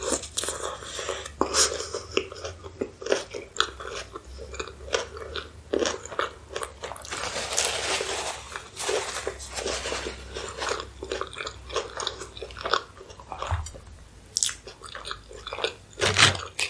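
Close-miked chewing and biting of a chili cheese hot dog: wet mouth clicks and soft crunches in an uneven rhythm. About halfway through, a denser rustle comes from a napkin wiping the mouth.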